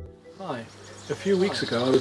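A man's voice starts talking about half a second in, with faint high-pitched chirping like insects in the background.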